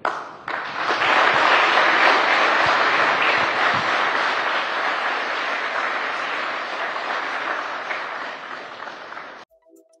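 A roomful of people applauding. It swells within the first second, then slowly fades and cuts off abruptly near the end.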